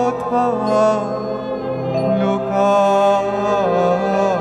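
A man singing a slow, held Bengali melody with small ornamental turns on the notes, over a steady sustained instrumental accompaniment.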